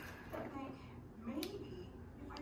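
Quiet table sounds: a faint voice murmuring twice and a single sharp click of a fork against a plate about one and a half seconds in.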